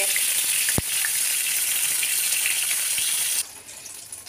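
Eggplant slices coated in salt and turmeric sizzling steadily in shallow oil in a karai, with one sharp click about a second in. The sizzle cuts off suddenly shortly before the end.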